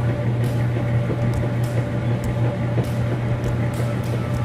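Laundry machine running with a steady low hum.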